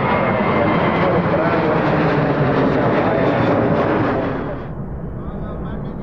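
Jet airliner engines running: a loud roar with a steady whine in it. About four and a half seconds in it drops sharply to a quieter, muffled hiss.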